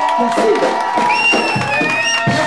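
Live band music with a long held note in the first half, mixed with a cheering crowd and a high whistle in the second half.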